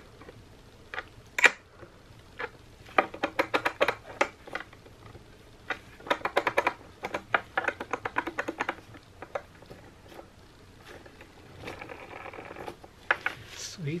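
Bursts of rapid clicking from a wrench tightening the axle nut that holds a new skateboard wheel on its truck axle, with a short whir near the end.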